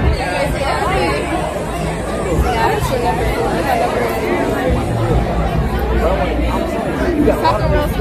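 Voices and crowd chatter, with a heavy, pulsing bass from background music underneath.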